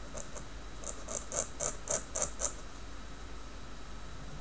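Steel dip-pen nib (Tachikawa Maru pen) scratching across notebook paper in a run of quick short strokes, about four a second for a second and a half.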